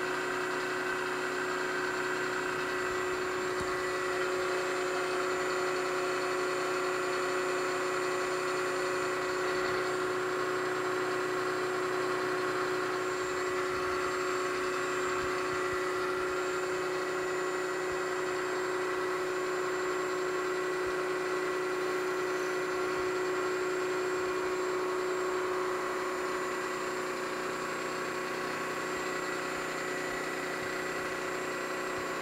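Milling machine running steadily, its spindle turning a cutter that is machining a counterbore into a model steam engine cylinder casting, with a steady motor whine.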